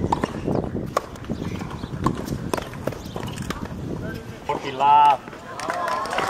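Tennis ball struck by rackets and bouncing on a hard court: a string of sharp, irregular knocks. About four and a half seconds in, a loud shout lasting about a second, the loudest sound.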